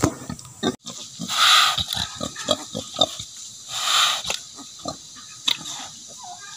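Native pigs grunting in short, repeated sounds, with two longer, louder calls about a second and a half and four seconds in.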